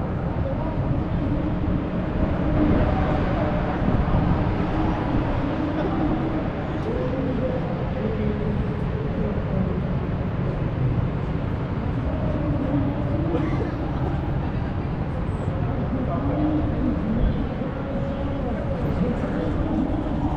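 People talking nearby over a steady low background noise, the chatter continuing throughout.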